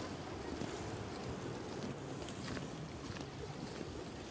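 Wind rumbling on the microphone over small sea waves washing against shoreline rocks, a steady noise with a few faint splashes.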